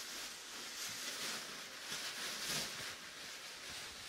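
A prom dress's fabric rustling as it is taken down and handled, an uneven soft swishing with a few small swells.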